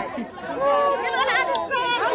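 Excited chatter of several people talking over one another in a crowd.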